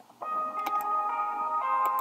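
Background music starts up just after the beginning: sustained high tones, several notes held one after another. A few light clicks are heard over it.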